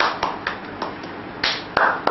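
A handful of sharp, unevenly spaced hand claps and taps, with two fuller claps about one and a half seconds in.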